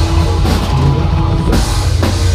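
Live heavy metal band playing loud: drum kit with cymbals, distorted electric guitars and bass in a dense wall of sound, with a cymbal crash about three-quarters of the way in.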